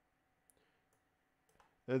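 Faint computer-mouse clicks over near silence: one small click about a quarter of the way in and a couple more about three quarters through. A man's voice begins at the very end.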